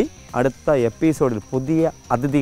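A man speaking, over a steady high-pitched drone of insects.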